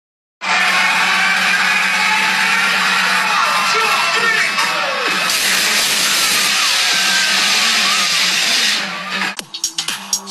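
Loud live dance music at a DJ concert with crowd noise, recorded on a phone's microphone as a dense wash over a steady bass note. It starts after a brief dropout and gives way near the end to quieter, choppier music.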